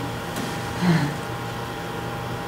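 Steady electrical hum and room hiss, with a brief faint murmured voice about a second in.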